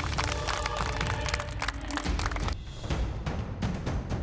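A few people clapping their hands over background music. The clapping is dense for the first two and a half seconds and then thins out.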